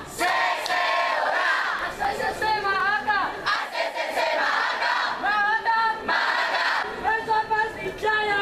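A group of students chanting a cheer (yel-yel) loudly in unison, in short phrases with brief breaks between them.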